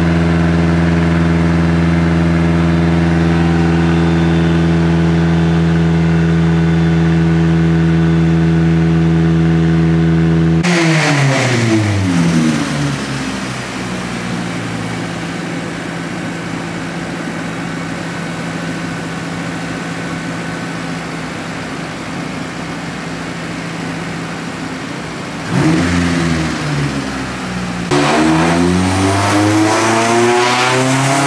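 Turbocharged Honda K24 four-cylinder engine in a Nissan Silvia S15 running on a chassis dyno. It is held at steady revs for about ten seconds, then comes off abruptly with the revs falling away and settling lower. It blips once near the end, then revs climb again.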